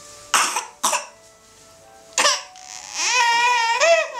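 A toddler crying: three short, sharp breathy bursts like coughing sobs, then from about three seconds in a loud, high-pitched wail that rises and falls.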